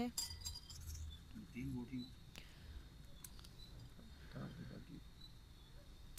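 Faint, scattered metallic clinks of a metal kebab skewer and fork against a ceramic plate as grilled chicken pieces are slid off the skewer.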